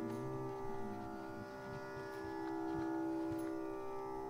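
Quiet stretch of Carnatic music: a steady drone of many held tones sounds throughout, with a few faint taps.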